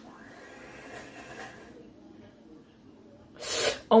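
Faint voices from the playing video, then near the end a sharp, loud gasp from the woman just before she cries out.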